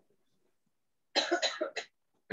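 A person coughing a few short times over a video-call line, starting about a second in after a second of dead silence.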